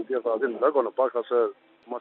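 Speech only: a man talking over a telephone line, the voice thin and band-limited. He stops near the end.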